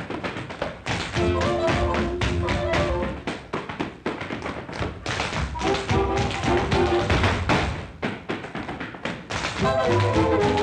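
Four tap dancers' shoes rattling out quick, dense runs of taps on a hard floor over a 1930s jazz orchestra, on an early sound-film recording. The band drops away in short breaks at the start, around the middle and near the end, leaving the taps alone.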